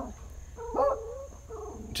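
A dog barking once, a short pitched bark just under a second in.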